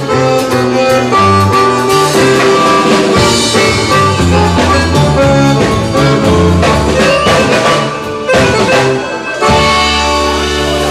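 Bayan (button accordion) playing an instrumental melody line live, over a band with a drum kit keeping the beat.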